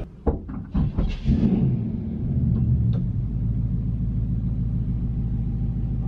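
A few knocks in the first second, then a steady low mechanical rumble, muffled as heard from inside a car's cabin.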